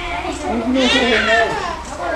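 Young children's high-pitched voices, wavering and overlapping, with no clear words.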